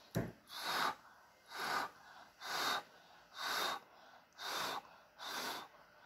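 A person blowing short, even puffs of breath onto wet acrylic paint, six puffs about a second apart. The blowing spreads the paint out into a bloom.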